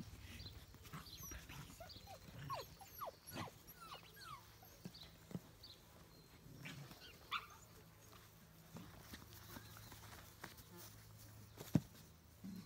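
Eight-week-old puppies giving faint, scattered yips and squeaks as they play, short falling cries clustered in the first half. A single sharp knock near the end is the loudest sound.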